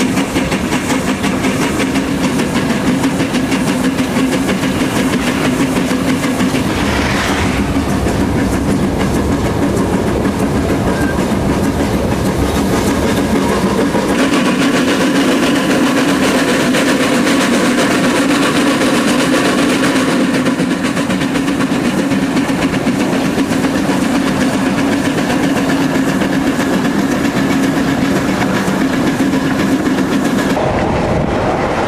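Narrow-gauge Px48 steam locomotive under way, heard from its front end: a loud, steady running noise of the engine working and the wheels on the rails.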